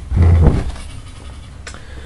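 Handling noise from a handheld camera being moved: a low bump at the start, then faint rustling with a short click near the end.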